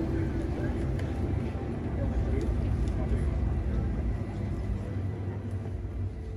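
Indoor hall ambience: indistinct voices of people talking over a steady low rumble.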